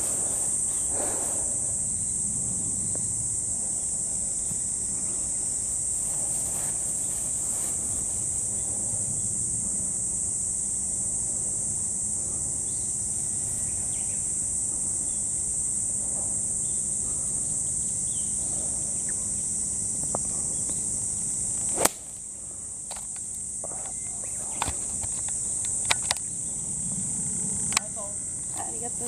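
A steady, high-pitched insect chorus runs throughout. About 22 s in there is a single sharp click, a pitching wedge striking the golf ball, followed by a few fainter clicks.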